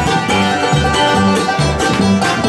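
Bluegrass band playing an instrumental passage, with banjo, mandolin, acoustic guitar and upright bass, the bass plucking a steady beat under the banjo.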